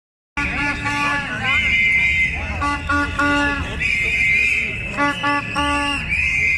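Street protest crowd blowing shrill whistles and sounding a horn in a repeated short-short-long rhythm, over a din of crowd voices.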